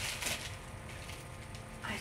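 Scissors snipping into a thin plastic mailer bag, the plastic crinkling, loudest in the first half second, then fainter rustling of the bag.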